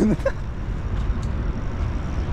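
Steady low rumble of outdoor background noise, with a short voice sound at the very start.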